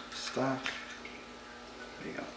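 A brief wordless vocal sound from a man, followed by a single light click as he handles shotgun parts, then faint room noise.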